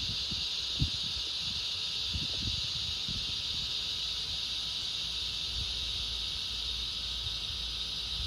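Chorus of cicadas droning steadily, a continuous high buzz with no breaks. A faint knock comes about a second in.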